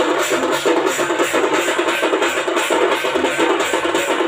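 An Odia street drum band playing loud, dense percussion music: many drums struck together in a fast, steady beat, with cymbals sounding on the beat.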